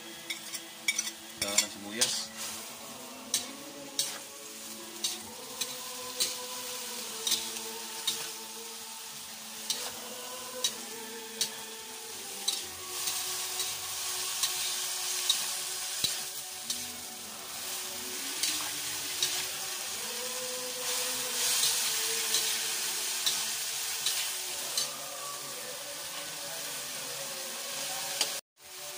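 Spatula stirring and scraping shredded sagisi palm heart in a steel wok, with a steady sizzle of frying. Sharp clicks of the spatula striking the wok come every second or so in the first half, and the sizzle grows stronger from about halfway through.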